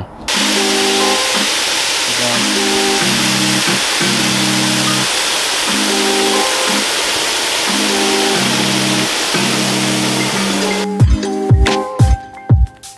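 Water spraying from a garden-hose nozzle into a plastic wash bucket, a steady loud hiss as the bucket fills with suds, under background music. The spray stops about eleven seconds in, and a few thumps follow.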